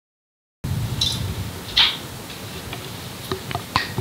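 Silence for the first half-second, then ambience at an outdoor softball field: a low rumble, a single brief loud noise just under two seconds in, and a few faint clicks near the end.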